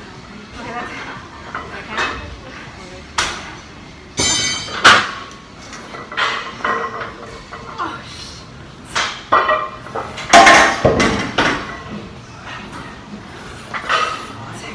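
A woman grunting and exhaling hard through heavy leg press reps near failure, in irregular bursts, the loudest near the middle and about two-thirds of the way in. Now and then there is a sharp metallic clank from the machine's plates or sled.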